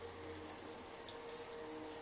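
Faint rustling and scratching of wig hair as hands and a comb work through it at the crown, over a low steady hiss.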